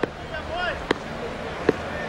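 Quiet broadcast ground ambience with faint distant voices, broken by three sharp clicks about a second apart.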